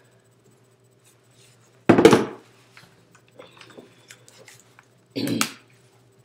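Handling noises as an SD card is put back into a DSLR camera: a loud short knock-and-rustle about two seconds in, light clicks and scrapes after it, and a second short rustling knock near the end.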